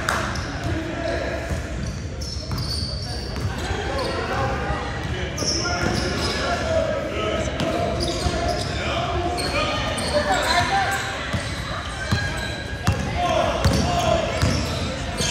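Basketball bouncing on a hardwood gym floor with sharp, repeated impacts, mixed with indistinct shouting voices of players and spectators, all echoing in a large gymnasium.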